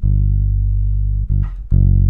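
Electric bass guitar played fingerstyle: long, sustained low notes, a new note plucked at the start, another about a second and a quarter in and a third shortly after.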